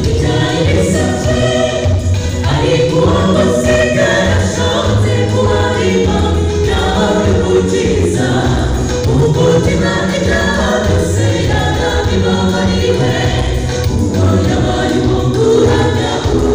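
A choir singing a gospel song, many voices together in harmony.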